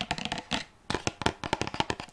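Long fingernails tapping quickly on a pink carton-style bath-milk bottle: a fast run of light clicks, about ten a second, with a brief pause a little before halfway.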